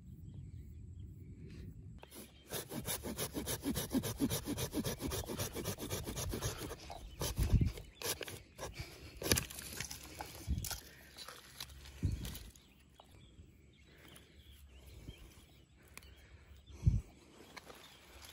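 A hand pruning saw cutting through the woody taproot of a chòi mòi (Antidesma) stump, with quick back-and-forth strokes for about five seconds. Then come a few dull thumps and scraping as the soil-caked root is worked loose.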